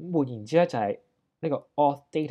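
Speech only: a narrator talking, with a short pause near the middle.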